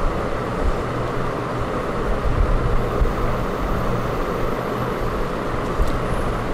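Steady low rumbling background noise, with a brief sharp click just before the end.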